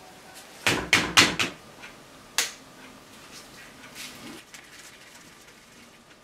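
Sharp knocks from a screwdriver being worked on the corroded reservoir cap screws of a motorcycle clutch master cylinder: four quick strikes about a second in, then one more just under a second and a half later.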